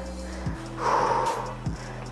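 Background music under a woman's single audible breath about a second in, taken during a slow stretch.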